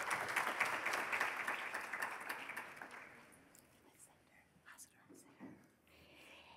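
Audience applauding, a dense patter of many hands that fades away about three seconds in, leaving near quiet with a few faint soft sounds.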